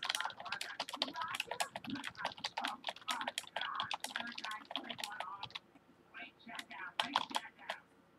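Typing on a computer keyboard: a run of rapid keystrokes, a short pause about five and a half seconds in, then another burst of keys.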